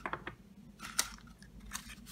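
Small clicks and taps of a metal-and-plastic travel perfume spray case and its cap being handled and set down, with one sharp click about a second in, then a cardboard box being picked up and rustling near the end.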